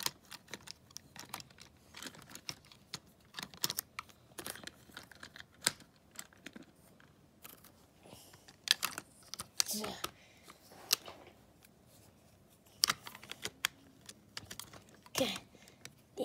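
Plastic toy trains and track being handled by hand: irregular light clicks and clacks of hard plastic as the engines and tender are lifted and set back on the rails.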